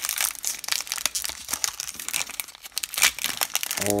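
Foil wrapper of a Topps baseball card pack crinkling as hands twist and work it open: a dense run of irregular crackles.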